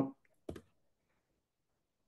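A single short computer keyboard keystroke click about half a second in, the key press that sends a typed chat message. Otherwise near silence.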